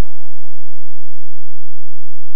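Faint hall room tone: a steady low hum with a soft, fading background murmur, and no distinct sound events.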